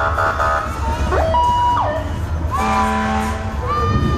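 Short electronic siren whoops and chirps: brief tones that sweep up and down, with a held horn-like tone about three seconds in and a long steady tone near the end. A steady low rumble from vehicle engines runs under them.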